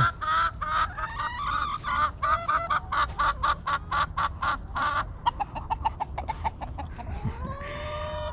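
A flock of backyard chickens clucking, many short clucks overlapping in quick runs, with a longer rising call near the end.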